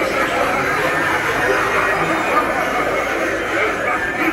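Indistinct voices talking, with no clear words, at a steady level throughout.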